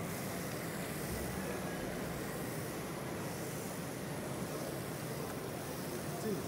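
Steady background noise of a busy exhibition hall: an even hum and hiss with no distinct sound events standing out.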